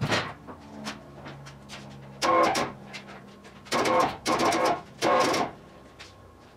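Loud metallic clanks of a car body shell being handled onto a wheeled dolly: one sharp knock at the start, then four ringing clanks in the second half.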